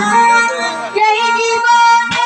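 A child singing a Bengali baul folk song into a microphone over instrumental accompaniment, holding long sustained notes.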